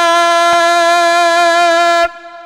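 A man's voice holding one long, steady note while chanting a xasiida, an Arabic devotional poem.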